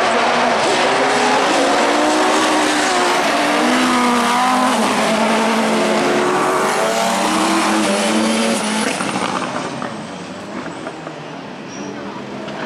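Autocross buggies racing on a dirt track, their engines revving up and down through gear changes. The engine sound drops away about nine seconds in.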